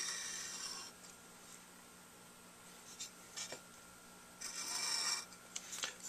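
Metal saxophone mouthpiece rubbed on sandpaper over a flat glass plate, taking material off the rails and tip rail to even the facing. A stretch of scratchy sanding at the start, a pause with a couple of light ticks, then another short sanding stroke near the five-second mark.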